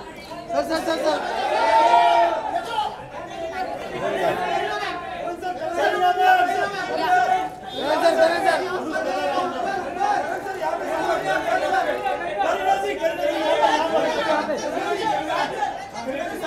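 Many voices talking over one another in a continuous hubbub, with the echo of a large hall.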